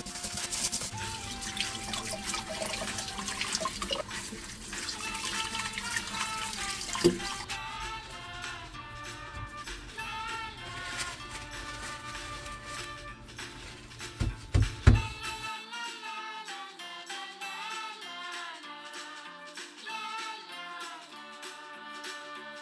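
Background music throughout. Under it for roughly the first seven seconds, a kitchen tap runs while pen shell meat is scrubbed with coarse salt in a stainless steel bowl. A few sharp knocks come about two-thirds of the way through.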